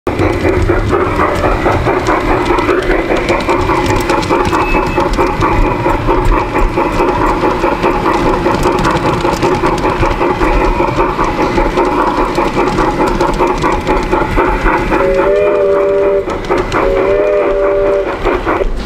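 Model steam train running along its track with a steady running noise, and its whistle sounding twice near the end, each toot bending up slightly and then holding.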